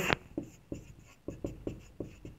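Marker pen writing on a whiteboard: a run of short strokes and light taps as figures are written.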